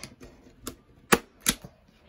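Hand-operated framer's point driver firing framing points into the back of an old wooden picture frame: a faint click, then two sharp snaps about half a second apart.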